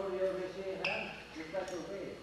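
A man's voice talking, not clear enough to be written down, with a single sharp knock a little under a second in.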